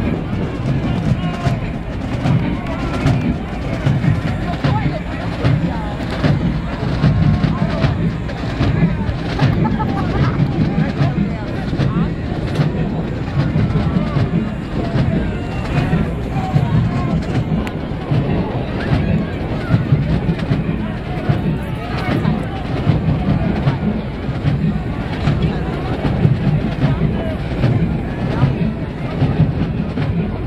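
A large marching band playing with drum strikes through it, heard from the sideline mixed with crowd chatter and noise from the stands.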